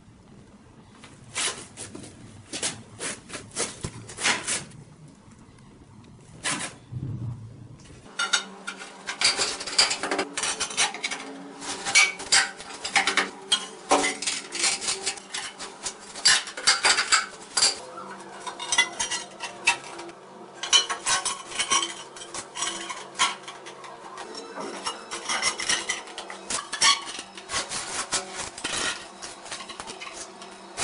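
Tiling hand tools clinking, tapping and scraping on hard surfaces. The clicks are sparse at first and come thick and fast from about eight seconds in.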